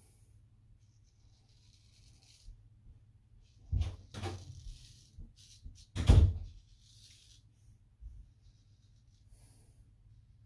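Straight razor scraping stubble on the neck in short strokes: a faint, crisp rasp. A few louder knocks come about four and six seconds in.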